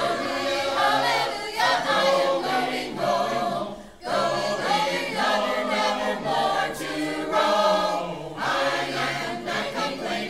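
Mixed church choir of men's and women's voices singing together, with a short break for breath between phrases about four seconds in.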